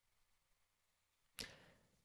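Near silence, broken about one and a half seconds in by a short, quick intake of breath close to the microphone that fades away quickly.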